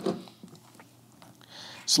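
Faint clicks and light scraping as a camera's metal Arca-type quick-release half cage is slid back into the rig's clamp by hand.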